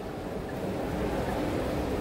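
Steady background noise of a busy indoor show hall: an even low rumble with no single distinct sound standing out.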